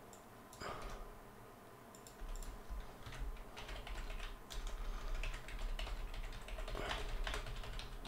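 Typing on a computer keyboard: a few scattered key clicks at first, then a steady run of keystrokes from about three seconds in.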